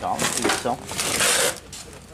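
Low voices at first, then a loud rustling noise about half a second long, the loudest sound here.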